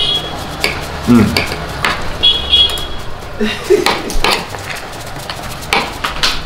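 Metal spoons clinking and scraping against a shared serving dish as people eat, in scattered short clicks, with a brief "mm" of appreciation about a second in. A short, high steady tone sounds a little after two seconds.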